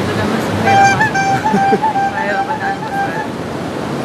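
Surf washing on a beach, with a high pitched sound held on nearly one note, wavering slightly and breaking briefly, from just under a second in for about two and a half seconds.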